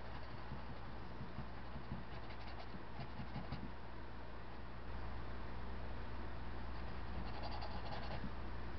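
Small paintbrush scratching and dabbing paint onto a canvas in faint, irregular strokes, over a steady low hum.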